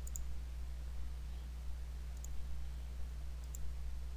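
A computer mouse clicking three times, faint, over a steady low hum.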